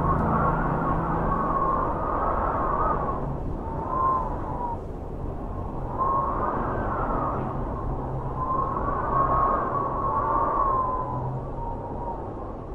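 Wind blowing in gusts that swell and fade every two to three seconds, with a thin whistle at the height of each gust. A soft, steady low music drone sits underneath.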